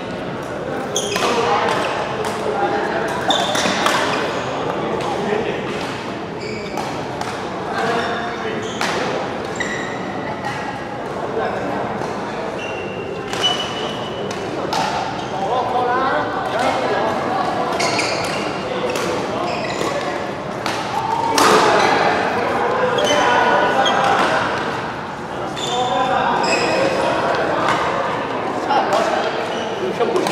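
Badminton doubles rally: sharp cracks of racket strings hitting the shuttlecock and short high squeaks of shoes on the court mat, echoing in a large hall, over indistinct background voices.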